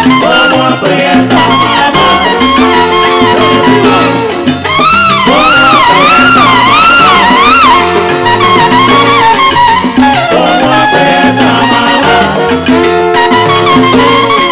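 Live salsa band playing an instrumental passage: horns over congas, timbales, piano and bass, with a long wavering held note in the middle.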